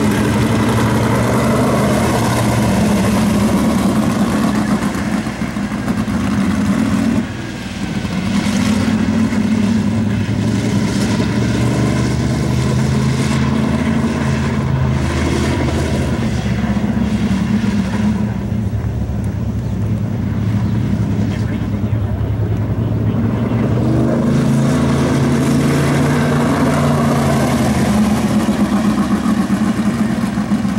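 Sprint car's V8 engine running laps on a dirt oval, heard from trackside. The engine note repeatedly climbs as the car accelerates and falls back as it eases off, with a brief lift-off about seven seconds in.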